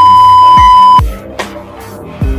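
A loud, steady single-pitched censor bleep that cuts off abruptly about a second in, over background music with a deep beat.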